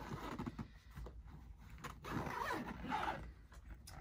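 The zipper of a softball roller bat bag being pulled along its track, with the nylon fabric rustling under the hands and a couple of sharp clicks.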